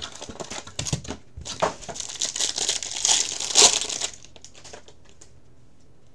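Foil trading-card pack wrapper crinkled and torn open by hand: a run of crackling that is loudest a little after three seconds in and stops about four seconds in.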